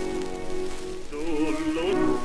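Orchestral introduction to an operetta wine song played from a 78 rpm shellac record, with the disc's surface crackle and hiss throughout. A held chord gives way about a second in to a melody with strong vibrato.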